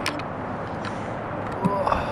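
Camera handling noise as the camera is passed from one person to another: a sharp knock as it is taken, then a few faint clicks over a steady background hiss.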